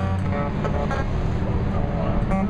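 A steady low rumble of street traffic, with sparse acoustic guitar notes played over it.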